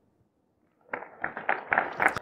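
Silence for about the first second, then the sound cuts in with a quick, irregular run of sharp taps.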